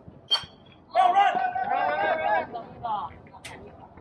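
A baseball bat strikes the pitched ball once with a sharp, ringing crack. About a second later, players and spectators shout and cheer.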